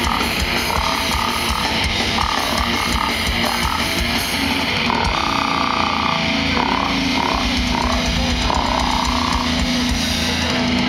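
Grindcore band playing live through a festival PA, heard from inside the crowd: loud, dense distorted guitar and drums.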